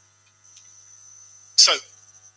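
Steady low electrical mains hum with a faint, steady high-pitched whine, carried in the lecture's sound system or recording chain.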